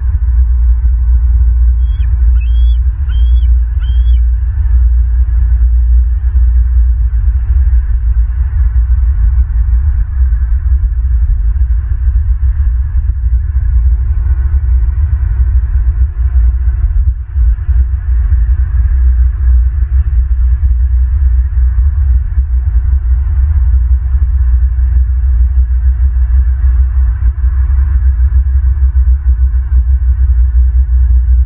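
Steady low rumble of wind buffeting the nest camera's microphone. About two seconds in, a bird gives four short, high chirps, evenly spaced.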